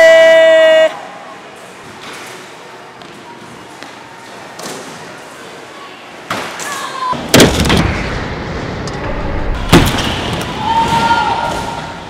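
A person's shout, held for about a second at the start. Then a stunt scooter's wheels roll on wooden skatepark ramps, with sharp knocks and clatters of the scooter hitting and landing on the ramps; the two loudest come about seven and a half and ten seconds in. A second short shout comes near the end.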